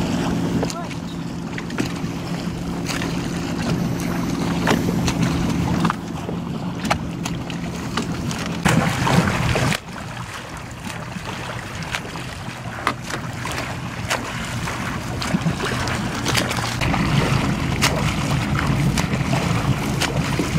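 Escort motorboat's engine humming steadily, with water rushing and the swimmer's front-crawl strokes splashing alongside. The engine hum cuts off suddenly about halfway through and returns a few seconds before the end.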